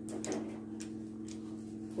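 Light ticks, about two a second, over a steady low hum.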